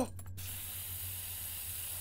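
Aerosol spray-paint can hissing steadily, starting after a brief pause.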